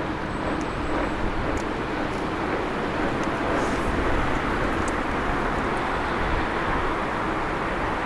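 ČD Class 844 RegioShark diesel railcar running as it rolls slowly toward the listener: a steady engine and rail drone with low rumble beneath.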